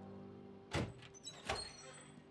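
A door banging open, two loud bangs about three-quarters of a second apart, over a faint sustained music drone.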